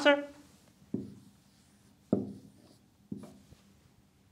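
Dry-erase marker writing on a whiteboard: three short strokes about a second apart, each starting sharply and fading quickly.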